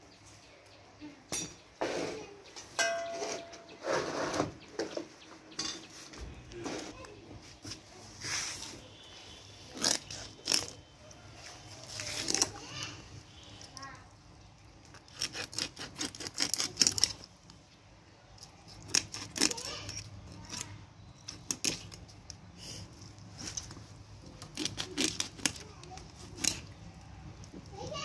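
Quick runs of sharp scraping clicks as a large carp is rubbed against the edge of a boti's curved iron blade to scrape off its scales, with light metallic clinks. The strokes come in fast bursts, densest in the second half.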